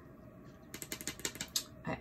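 A quick run of about ten light, sharp clicks lasting under a second, from hands handling a paper planner.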